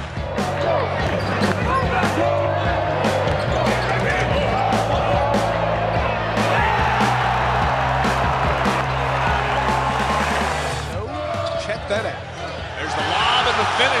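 Basketball arena game sound, with crowd noise and a ball bouncing, under music with a steady bass line. The bass stops about three seconds before the end.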